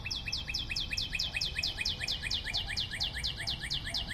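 A rapid, even trill of short, high, downward-sweeping chirps, about seven or eight a second, like a small bird's trill, with a faint steady hum beneath.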